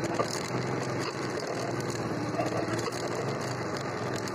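Kuba X-Boss motorcycle engine running at low speed while the bike creeps through traffic, a steady fast-pulsing engine note.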